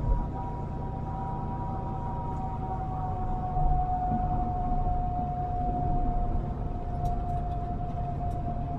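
Semi truck driving on the road, heard inside the cab: a steady low engine and road rumble with a high whine over it that slowly sinks in pitch. There is a brief bump right at the start and another about three and a half seconds in.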